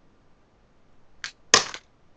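Small plastic makeup compact being handled and opened. A faint click comes about a second in, then a louder, brief clatter about a second and a half in as a piece comes loose and falls out.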